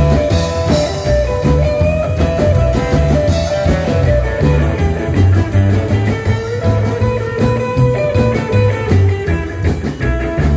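Live rockabilly band playing: electric guitar over a steady run of upright double bass notes and a drum kit.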